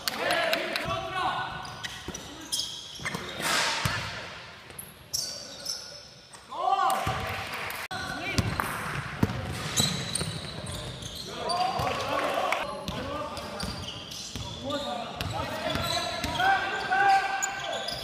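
Basketball game sounds in an echoing gym: the ball bouncing on the hardwood floor with sharp knocks, sneakers squeaking in short squeals, and players calling out.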